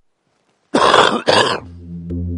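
Silence, then two loud coughs in quick succession just under a second in, followed by a low, steady music drone coming in.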